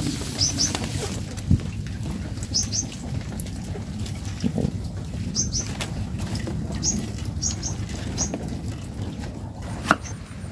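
A small bird giving short, high chirps, often in quick pairs, every second or two, over a steady low background noise. A sharp knock comes near the end.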